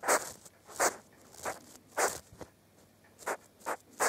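A baby hedgehog of about 50 grams making short, sharp puffing sounds close to the microphone, six irregular puffs in four seconds, the louder ones near the start and about two seconds in.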